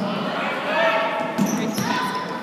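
Basketball bouncing on a hardwood gym floor, a few sharp thumps, among spectators' voices and shouts echoing in the gym.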